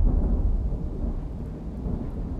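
Low rumble of thunder dying away.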